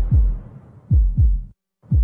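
Heartbeat sound effect: deep double thumps, three beat pairs about a second apart, each thump dropping in pitch, with a brief moment of silence before the last pair.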